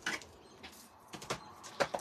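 Light plastic clicks and taps as a clear acrylic stamp block and a plastic-cased stamp-cleaning pad are handled on a craft desk: one click at the start, then several more in the second second.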